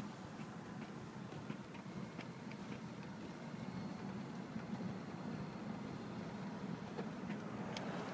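Steady low rumble of a car driving slowly, heard from inside the cabin, with faint light ticking on top.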